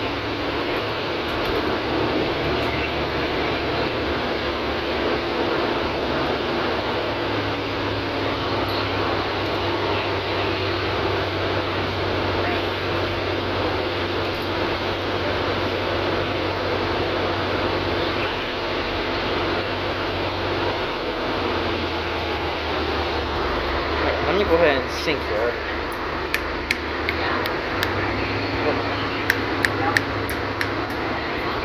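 Inside a moving city bus: steady engine drone and road noise as the bus drives. About 25 seconds in there is a brief louder gliding sound, and near the end a run of sharp clicks as the camera is handled.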